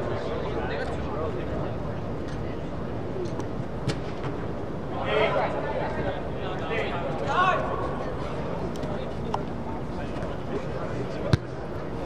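Players shouting on an indoor soccer pitch, their voices coming in short bursts about five and seven seconds in and echoing in a large inflated sports dome, over a steady background rumble. A couple of sharp knocks stand out, one near four seconds and a louder one near the end.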